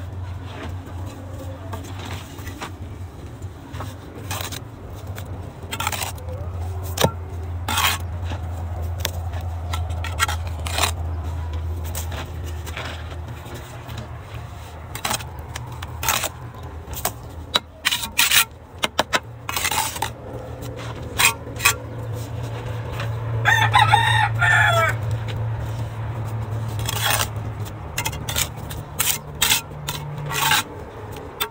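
Steel trowel clinking and scraping on bricks and wet mortar in short, irregular strokes as bricks are laid and the joints trimmed, over a low steady hum. A rooster crows once, about three-quarters of the way through.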